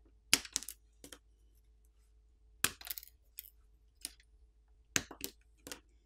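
Light, sharp clicks and snaps of a smartphone's flex-cable press connectors being popped off their sockets with a plastic pry tool, in small clusters: a few near the start, a few in the middle, a few near the end.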